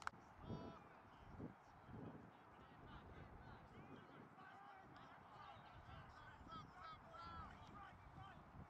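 Near silence: faint open-air ambience with scattered distant calls, and a sharp click right at the start.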